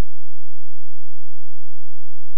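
A single steady, low electronic tone, a synthesized Rife-style healing frequency, held without any change in pitch or loudness.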